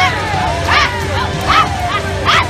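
A group of women players yelling short, sharp whoops one after another, over a steady crowd din.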